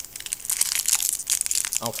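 Foil wrapper of a Pokémon trading card booster pack crinkling and tearing open in the hands: a dense run of sharp crackles that starts just after the beginning and carries on.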